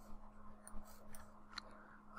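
Faint room tone with a low steady hum and a few soft, short clicks.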